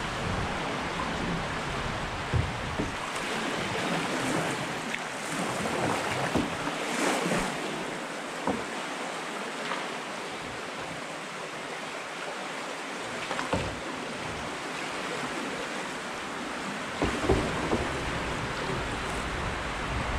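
Fast, high river water rushing and splashing around a canoe as a steady noise, with a few light knocks scattered through. The river is running high, over six feet.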